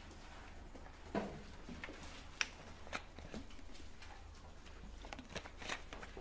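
Faint rustling and scattered light clicks of Bible pages being leafed through in a quiet room, over a low steady hum.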